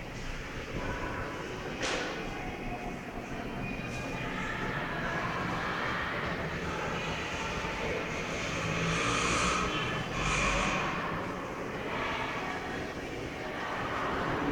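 Shredded plastic wrappers rustling and crinkling as handfuls are pulled from a pile and stuffed into a cloth pillow casing, growing louder about nine to ten seconds in.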